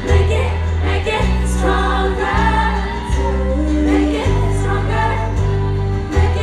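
Live pop music: several women's voices singing together in harmony over a band, with a heavy bass line that changes note about once a second.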